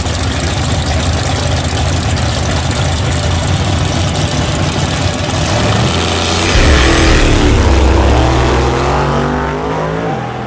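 Drag cars' V8 engines running loudly at the starting line. About six and a half seconds in the rumble grows louder, and toward the end an engine revs with its pitch climbing.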